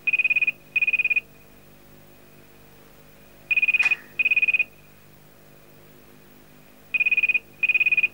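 Landline telephone ringing with a warbling electronic double ring, heard three times about three and a half seconds apart.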